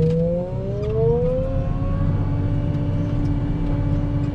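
Wheel loader's diesel engine and hydraulics revving up under load. A whine rises in pitch over the first two seconds or so, then holds steady over a low rumble as the loader works a load of grass across a silage clamp.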